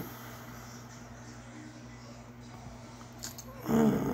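Steady low hum, then near the end a man's short pained grunt while he squeezes a cyst on his arm.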